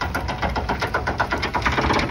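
A Chevrolet Tahoe's engine running under load as it drags a pickup up onto a flatbed trailer by a chain, with a fast, even clattering over a low rumble.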